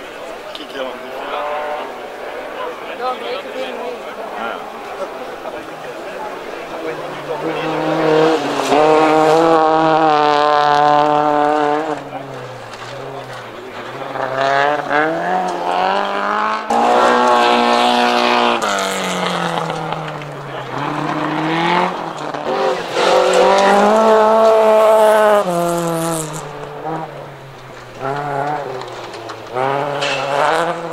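Rally car engines at full throttle on a stage, revving up and dropping back through gear changes. The engine note climbs and falls again and again, loudest in three passages from about eight seconds in.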